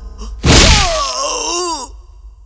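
A punch sound effect lands about half a second in, followed at once by a man's drawn-out groaning cry that wavers in pitch and falls away near the end.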